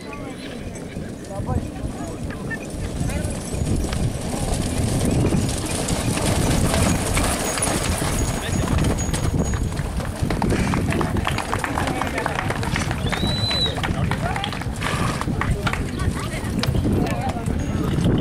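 Hoofbeats of a large group of Camargue horses on dry, grassy ground, many overlapping clip-clops that grow louder over the first five seconds as the riders close in, then continue as the horses mill about.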